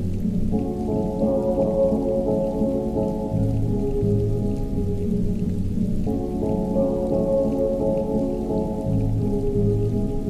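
Rain falling, with muffled music under it: held chords that sit low and change every second or so, the phrase starting over about five and a half seconds later.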